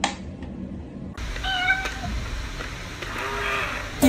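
A sharp tick from a mechanical metronome at the start, then a cat meowing twice: a higher call about a second and a half in, and a shorter, lower one near the end.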